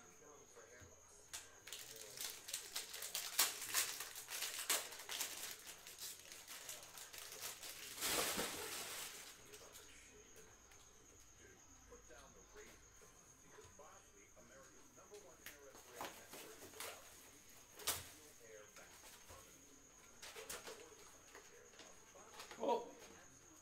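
Baseball card packs and cards being handled at a table: rapid rustling and flicking for the first several seconds, with a longer crinkling rustle around eight seconds in, then only occasional light clicks.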